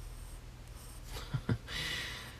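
Pencil scratching on sketchbook paper as short curved hatching strokes are drawn, with a couple of brief ticks about a second and a half in.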